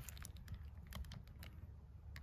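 Faint footsteps crunching on dirt and gravel: irregular light clicks over a low steady rumble.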